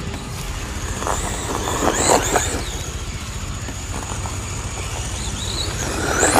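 LC Racing 1/14 RC truggy driving, its drivetrain giving a steady high whine with rough grinding bursts, then a rising whine as it speeds up at the end. The noise is what the driver takes for a stripping spur gear meshed too tight; the owner later traced it to the rear dogbone.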